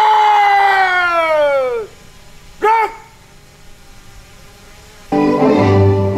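A ceremony commander's long, drawn-out shouted command, falling in pitch, then a short sharp call: the order to salute the flag. About five seconds in, electronic organ music begins, accompanying the flag raising.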